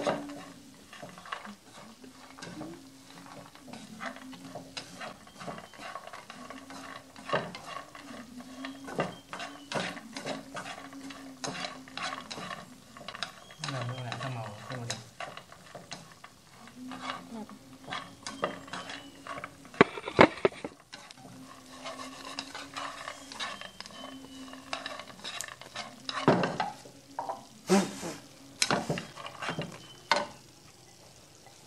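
Wooden chopsticks stirring and scraping sugar-and-garlic-coated peanuts around a nonstick frying pan, a steady run of small clicks and rattles, with sharper knocks of the chopsticks against the pan around two-thirds of the way in and several more near the end. The peanuts are nearly done and are being stirred as the heat goes off, so that they turn crisp.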